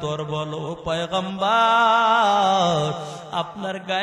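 A man's voice chanting a sermon in a melodic, sung tone into a microphone. It moves through short phrases, then holds one long, wavering note through the middle before it falls away into shorter phrases.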